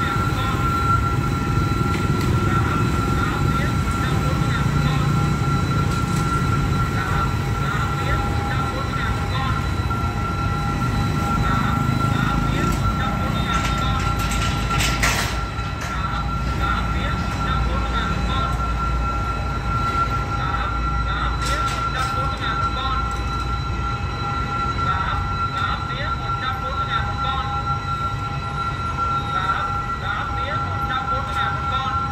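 Railway level-crossing warning alarm sounding a steady two-note tone, with motorbike engines going by in the first half and then easing off as traffic stops. A metallic clatter about halfway through as the crossing barrier is pulled shut.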